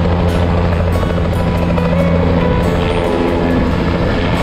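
A helicopter's rotor and turbine running steadily as it lifts off the pad, with background music mixed over it.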